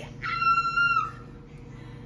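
A woman's excited, high-pitched squeal, one held note lasting under a second near the start.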